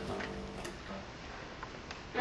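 Quiet hall room sound as the last of a double bass note dies away, with a few faint clicks.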